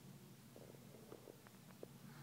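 Near silence with faint stomach gurgles close to a pregnant belly: a few short squeaks and pops from about halfway in, over a low steady hum.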